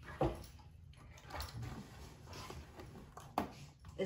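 Bottles and a cardboard box being handled on a wooden table, giving a few knocks and clicks: one just after the start and a sharp one about three and a half seconds in.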